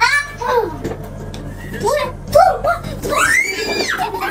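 Young children's voices in excited play: short calls and laughter, then a loud, high squeal that rises and falls near the end.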